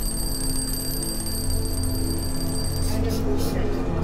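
Twin-bell alarm clock ringing with a steady, high metallic tone, cutting off about three seconds in, over background music.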